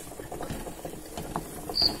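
A wooden spatula stirring and scraping a thick sweet-potato and jaggery paste around an aluminium pan: soft, irregular scrapes and small ticks. Two short high squeaks come near the end.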